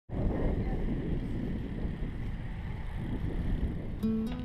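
Wind buffeting the microphone of a camera carried on a moving bicycle: a steady low rumble.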